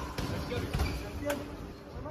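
Faint voices of people talking on the street below, over street background noise, with a couple of short knocks.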